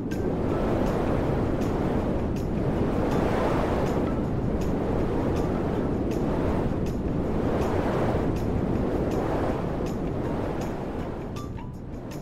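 Strong gale-force wind blowing in gusts, a noisy rush that swells and eases every couple of seconds, dying down near the end.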